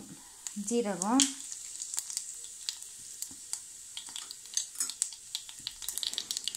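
Ghee sizzling hot in a small stainless steel saucepan as spices are tipped in for a tadka. A steady hiss runs under many sharp crackles, which come more often in the second half.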